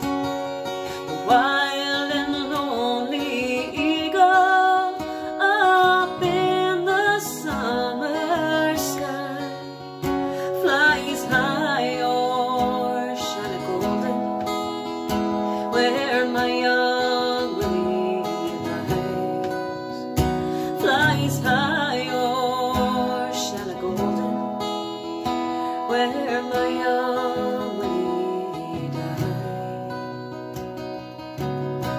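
A woman singing a ballad while strumming an acoustic guitar.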